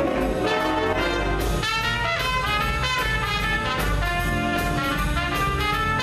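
School jazz big band playing a swing chart: trumpets and trombones playing chords over saxophones, with drum set and piano underneath.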